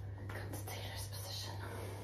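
Soft breathy, rustling sounds of a person shifting from a raised-leg pose into a cross-legged seat, over a steady low hum.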